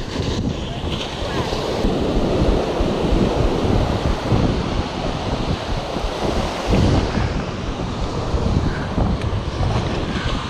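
Ocean surf breaking and washing up the beach, with wind buffeting the microphone.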